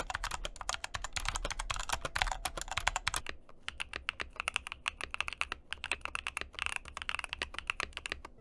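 Fast typing on a Magegee 60 budget mechanical keyboard, first in stock form, then, about three seconds in, on the same keyboard after modding. The typing is quieter and the keystrokes sparser in the second part.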